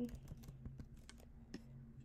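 Keys tapped on a computer keyboard, a few quick keystrokes at first, then scattered single taps, over a faint low hum.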